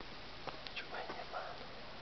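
A faint whispering voice with a few small clicks over a steady background hiss.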